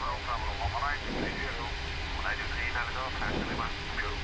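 Steady low hum of an Airbus A340-300 flight deck while engine one is being started, with a faint voice speaking twice over it.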